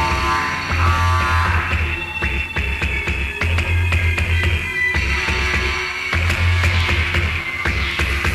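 Jungle drum and bass DJ mix with a heavy sub-bass line and fast breakbeat drums.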